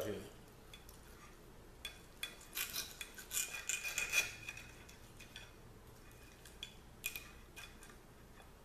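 A steel knife and fork cutting a steak on a ceramic plate: a run of scraping and clinking about two seconds in, with a thin ringing as the blade rubs the plate, then a few light clicks.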